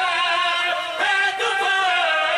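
Several men singing together into a microphone, with loud, held notes that waver in pitch.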